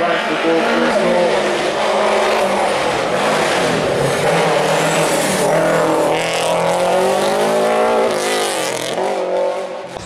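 Subaru Impreza hillclimb car's engine at high revs as it drives past under full attack. The pitch rises and falls through throttle lifts and gear changes, then drops away near the end.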